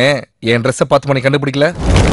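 A man's voice speaking dialogue in two phrases with a short silent break between them, then near the end a sudden, loud, dense explosion-like noise bursts in and keeps going.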